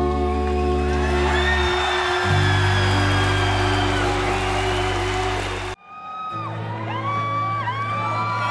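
Live rock band holding sustained chords over a steady bass, with a drawn-out sung line on top. The music cuts off abruptly about three-quarters of the way through, and crowd whoops and whistles follow over a low steady drone.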